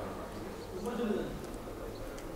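A pause in the speech with faint room hum, and a bird cooing softly in the background, a little stronger about a second in.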